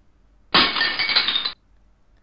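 Slide-animation sound effect: a loud burst with a clinking ring, about a second long, that starts and stops abruptly as a new line appears on the slide.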